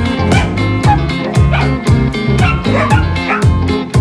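Background music with a steady beat, over which a dog yips and whines several times.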